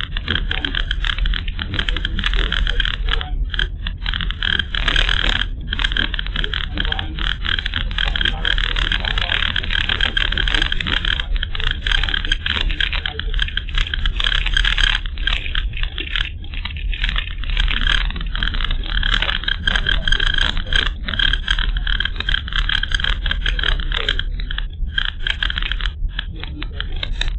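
Steady engine and road rumble of a moving car, picked up inside the cabin by a dashcam's microphone, with a constant high hiss over it.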